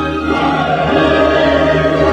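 Choir and orchestra performing a choral cantata, sustained massed voices over orchestral accompaniment.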